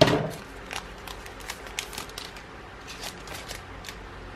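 A Magic: The Gathering booster pack's foil wrapper torn open with a sharp rip, fading over about half a second, followed by a run of light crinkles and card clicks as the cards are slid out and handled.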